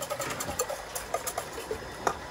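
Light clicks, taps and clinks of utensils and dishes being handled on a folding camp table, several a second and unevenly spaced, over a low steady rumble.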